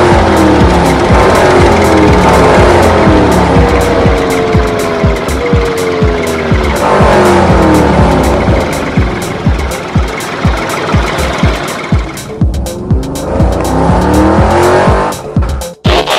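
Car engine sound effects revving and passing by, with tyres squealing, over background music with a steady beat. The engine pitch falls in repeated sweeps through the first half and rises again near the end.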